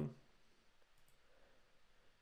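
Faint clicks of a computer mouse over near-silent room tone.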